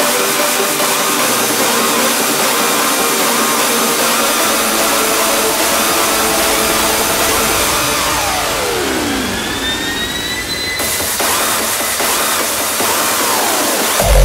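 Hardstyle breakdown with no kick drum: a loud, dense, noisy wash of synth effects over steady tones. A falling pitch sweep comes about eight seconds in, then a rising one, and the top end cuts off suddenly about eleven seconds in.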